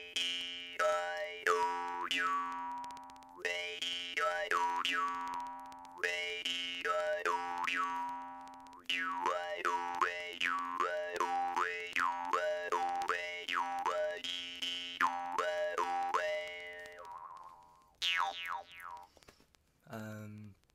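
Jaw harp plucked repeatedly, droning on one low steady note while the player changes vowel shapes with his mouth, so a bright overtone sweeps up and down in a 'wah-wee' pattern. The playing stops about 17 seconds in, with a brief last bit of playing a second later.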